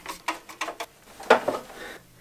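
A series of short, sharp clicks and taps from hand tools working on the electrical panel's wiring, the loudest about a second and a quarter in.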